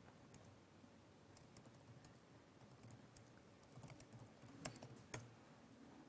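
Faint typing on a computer keyboard: scattered key clicks, with two louder key strikes about a second before the end.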